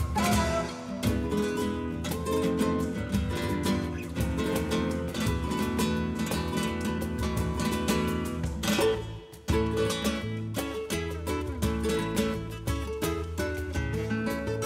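Background music led by a plucked and strummed acoustic guitar, briefly dropping away about nine seconds in.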